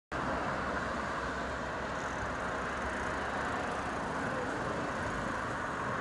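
Steady hum of city street traffic, an even background noise with no distinct events.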